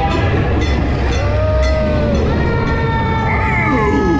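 Ride show audio: steady held tones over the low rumble of the moving ride vehicle. About two seconds in, siren-like wails with rising and falling pitch come in, from the animatronic Sheriff police car at the scene.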